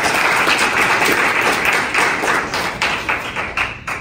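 A roomful of guests applauding, many hands clapping together; the applause stops just before the end.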